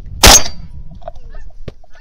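A single shotgun shot about a quarter second in, the loudest sound, ringing off briefly. It is followed by a few faint goose honks and a short sharp click near the end.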